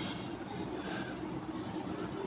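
Steady low background rumble with a faint hum, without a clear single source.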